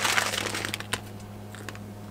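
Brown paper bakery bag being handled and opened, crinkling and rustling with small crackles, louder in the first second and fainter after.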